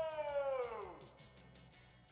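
A man's long, high "whoaaaa" call, made through cupped hands, sliding down in pitch and dying away about a second in.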